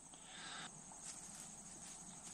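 Faint outdoor ambience: crickets chirping steadily, high-pitched, with soft rustling and a few light taps of handling close by.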